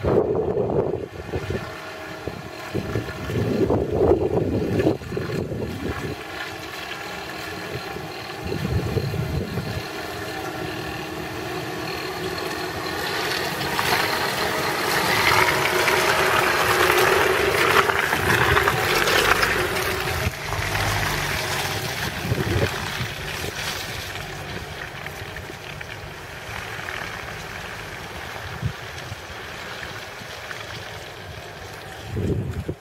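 A VAZ-2120 Nadezhda minivan's four-cylinder petrol engine and Forward Professional 139 mud tyres on a muddy dirt track. The van approaches, passes close about halfway through, then fades as it drives away. Gusts of wind hit the microphone in the first few seconds.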